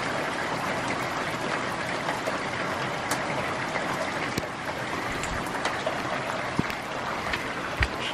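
Heavy rain pouring down steadily, with a few sharper taps of drops striking something nearby.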